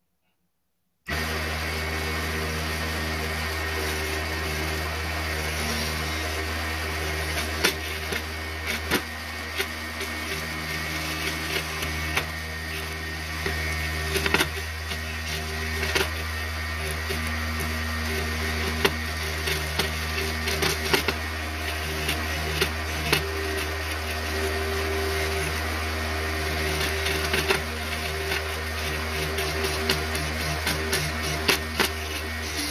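Mini wood lathe running with a steady motor hum, starting about a second in, while a hand-held turning chisel cuts the spinning wooden blank with irregular scraping ticks.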